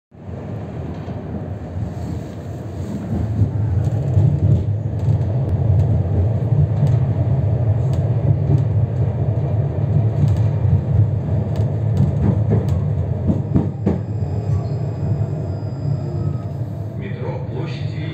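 Moving tram heard from inside: a steady, loud rumble of wheels on rails and running gear, growing louder about three seconds in, with a few faint clicks.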